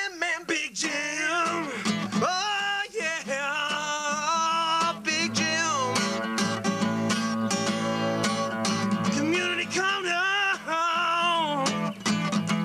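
A song: a voice singing with wavering pitch over acoustic guitar.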